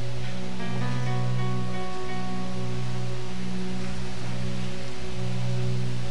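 Background music of sustained low chords that change every second or so, with a few higher held notes entering about a second in.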